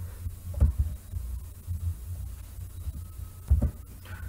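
A low steady hum with two soft low thumps, one just after the start and one near the end.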